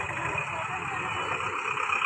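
A bus engine idling steadily, a low even running sound.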